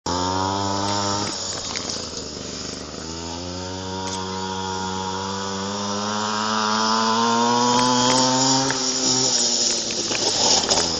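Pocket bike engine running at a steady pitch, then backing off about a second in. From about three seconds in its pitch climbs slowly for several seconds as it pulls harder, and it eases off near the end.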